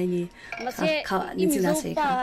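People talking: conversational speech in the local language, with a short pause just after the start.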